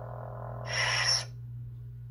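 Lightsaber replica's sound board humming, then playing its blade-retraction sound, a short rising hiss about half a second in. The hum cuts out about a second in as the blade switches off.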